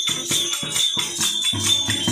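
Instrumental passage of a devotional bhajan: a tabla pair played in a quick, steady rhythm with jingling small percussion and held harmonium tones underneath.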